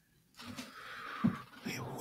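A person's faint, breathy breath after a brief silence, leading into speech.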